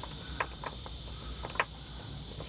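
Steady high insect chirring in the background, with a few small sharp clicks and rustles as stranded copper wire ends are twisted by hand around a pull rope.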